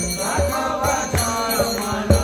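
Devotional chanting sung to a drum beating about twice a second, with jingling cymbal-like percussion.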